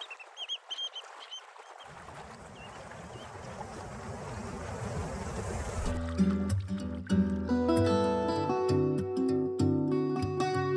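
A water ambience hiss with a few short high chirps, swelling with a low rumble underneath. About six seconds in, plucked guitar music comes in with a bass line.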